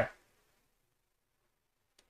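Near silence: a man's voice trails off in the first instant, then nothing more is heard.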